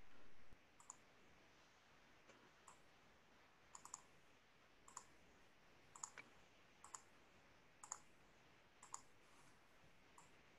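Near silence broken by faint, sharp clicks about once a second, some of them in quick pairs or threes.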